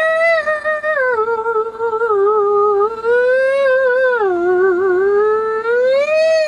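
A voice holding one long, wavering "ooh" with a quick vibrato, gliding slowly up in pitch and back down again twice, like an eerie theremin-style sci-fi tone.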